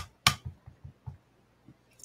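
An ink pad tapped face-down against a ceramic tile: two sharp taps in quick succession, then a few fainter knocks.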